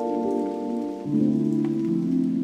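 Lo-fi hip hop music: soft held chords that shift to a new chord about a second in, over a faint crackle.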